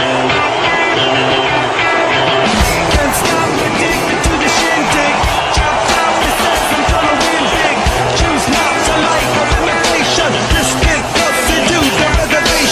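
Fireworks going off, with irregular bangs and crackling from about two and a half seconds in, over loud rock music.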